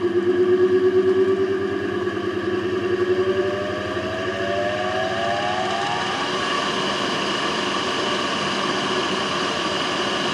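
3 HP Lancashire three-phase induction motor, run on single-phase 230 V through a capacitor, slowly running up to speed. Its whine rises steadily in pitch with a throbbing beat at first, reaches full speed about six seconds in, then runs on with a steady hum. The slow start comes from running a three-phase motor on a single-phase supply with a capacitor.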